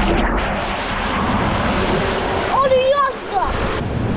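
Water rushing and splashing as a child slides down a plastic water slide and shoots out into the water. A child's high voice cries out briefly a little past halfway.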